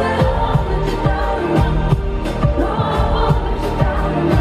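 Live pop band playing, with a female lead vocal over a steady drum beat of about two hits a second and keyboards, recorded from within the audience.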